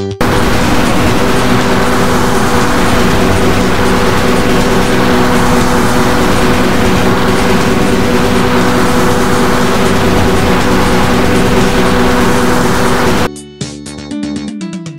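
Loud, harsh rushing noise with steady humming tones underneath: a cartoon transformation sound effect. It starts suddenly and cuts off abruptly about a second before the end.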